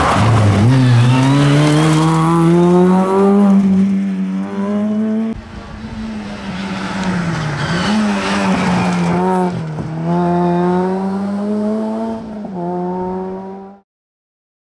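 Peugeot 106 S16 rally car's 1.6-litre 16-valve four-cylinder engine at high revs, climbing in pitch through each gear with brief drops at the gear changes, over two passes. The sound cuts off suddenly near the end.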